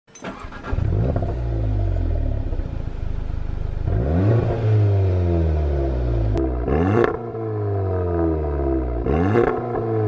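Audi S1's 2.0 TFSI turbocharged four-cylinder through a Remus non-resonated cat-back exhaust, starting up and catching with a short flare, then running steadily. It is revved briefly three times, and the revs fall away after each blip.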